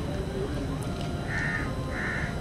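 A crow cawing twice, short harsh calls in the second half, over a low background hum.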